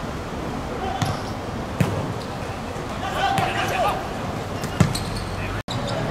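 A football kicked on a hard outdoor court: three sharp hits, about a second in, just before two seconds and near five seconds, with players shouting between them.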